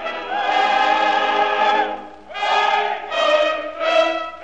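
Operatic singing with orchestra on an old recording, from a tenor–soprano operetta duet. A long held note with vibrato ends about two seconds in; after a brief dip, a new sung phrase begins.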